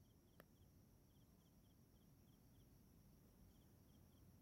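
Near silence: faint night ambience with a cricket chirping in short double pulses, a few a second, and one faint tick about half a second in.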